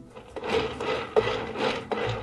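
Metal palette knife spreading whipped cream over a genoise sponge: about four rasping scrapes in a row, with a sharp click a little past halfway.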